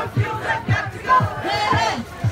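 Crowd of marchers chanting and shouting slogans, many voices overlapping.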